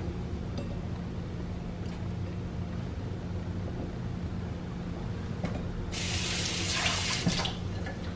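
Water running for about a second and a half, starting suddenly about six seconds in, over a steady low hum.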